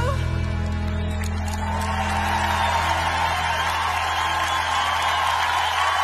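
The end of a pop ballad: a singer's final held note stops and the accompaniment sustains a low closing chord. From about a second and a half in, audience applause and cheering build over it.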